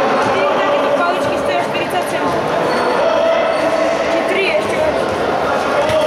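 Busy, echoing sports-hall sound of a futsal game: many overlapping voices calling and chattering, with the ball now and then kicked and bouncing on the court floor.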